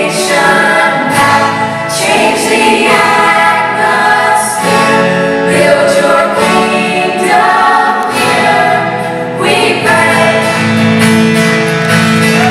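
A group of young voices singing a worship song together in harmony, the voices carrying the music with little instrument heard behind them.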